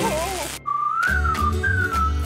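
A cartoon electric-shock sound effect with wavering, warbling tones cuts off about half a second in. After a brief gap, a whistled tune over a low beat begins: a cartoon theme jingle.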